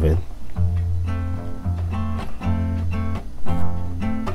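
Acoustic guitar fingerpicked on an F major 7 chord: a low bass note on the sixth string sounded again about once a second under plucked higher strings in a steady pattern.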